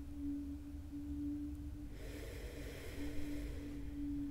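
A woman's slow, audible in-breath of about two seconds, starting about halfway through, over a steady low hum.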